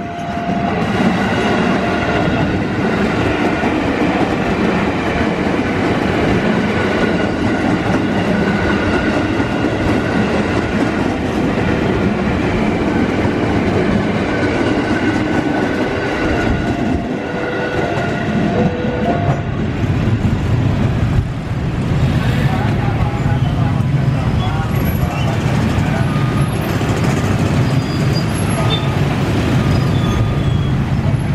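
Electric commuter trains, including an ex-JR 205 series KRL set, passing at speed: a continuous loud rumble and clatter of steel wheels on the rails.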